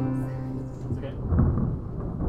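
Final banjo chord ringing out and fading away, then, about a second and a half in, a low thump and rumble of handling noise as the banjo is moved near the microphone.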